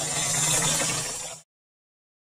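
Water from a tap on a rain barrel pouring steadily into a plastic watering can. It cuts off suddenly about one and a half seconds in.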